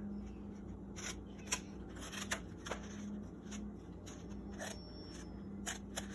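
Small child's scissors snipping through construction paper in short, separate cuts, about seven spread unevenly over a few seconds.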